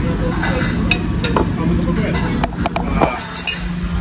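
Metal cutlery clinking against plates, several short separate clinks, over the murmur of other diners talking.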